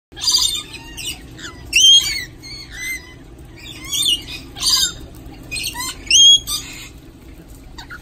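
Rainbow lorikeets chattering: a string of short, high-pitched calls, several sweeping quickly up and down in pitch, coming about every second, loudest near two and six seconds in.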